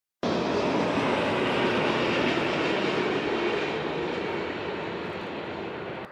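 Twin-engine jet airliner flying low on landing approach, its engines giving a steady rushing noise that slowly fades toward the end.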